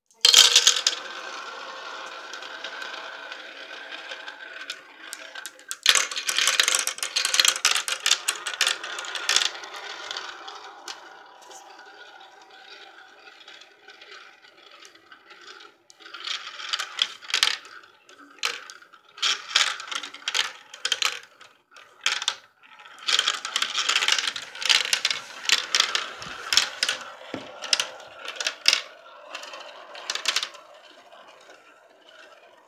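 Marbles rolling around plastic marble-run funnels: a steady rolling rumble, then clattering and clicking as they drop through the funnel holes and knock along the plastic track. There is a loud burst of clatter a few seconds in, and many separate clicks in the second half.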